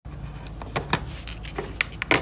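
Small polished crystal pieces clicking and clinking against one another and a plastic packing tray as they are handled. The sound is a scattered series of light, sharp clicks.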